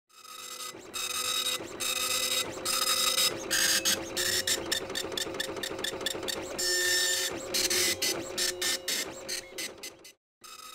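Dot matrix printer printing: the print head buzzes across the page in repeated passes of about half a second to a second, with short breaks between them, and a run of quicker, shorter passes in the middle.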